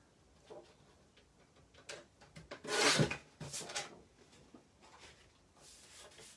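Paper guillotine trimming a sheet of backing paper: a few light clicks as it is set up, then a brief noisy swipe of the cut about three seconds in, followed by a few more small clicks.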